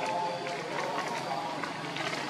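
Indistinct distant voices over steady outdoor background noise, with scattered small clicks and rustles.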